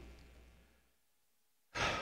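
Near silence with a faint low hum dying away at the start, then a short breath drawn in near the end.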